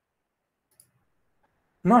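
Near silence with a single faint click about a second in; a man's voice starts near the end.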